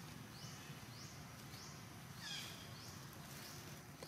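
Faint outdoor chirping: a short high rising chirp repeats about once a second, with a louder falling call about two seconds in.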